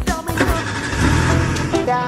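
Background music with singing and a beat, broken by a loud rushing noise that lasts about a second, after which plucked-string music starts near the end.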